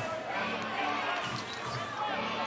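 Basketball game sound from an indoor court: a ball bouncing on the hardwood floor over the crowd's murmur and faint voices from the players and crowd.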